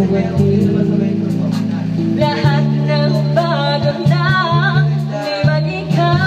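A woman singing into a karaoke microphone over a karaoke backing track with guitar; the vocal line comes in strongly about two seconds in.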